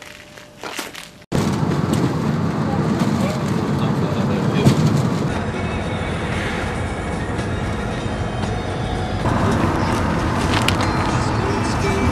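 Steady road and engine noise of a van driving, heard from inside the cabin, starting abruptly about a second in.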